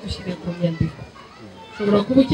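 Mostly speech: a woman talking into a handheld microphone, dropping quieter around the middle and picking up again loudly near the end, with other voices from the surrounding crowd behind her.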